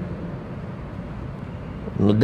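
Steady background noise picked up by the lectern microphone: an even low rumble with a faint hiss above it.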